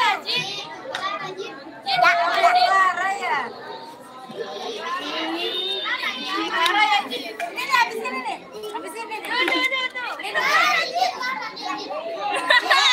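Many children's voices chattering and calling out over one another, none clear enough to follow.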